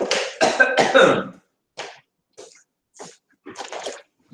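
A man coughing and clearing his throat in a fit: a dense run of loud coughs in the first second and a half, then several shorter, separate coughs.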